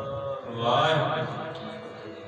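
A man's voice chanting at the close of a kirtan, swelling about half a second in and then fading, over a faint steady sustained tone.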